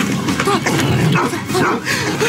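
A large dog snarling and barking as it attacks a man, who cries out.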